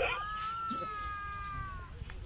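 A single long, high-pitched animal call, held nearly level for almost two seconds and dipping slightly at the end.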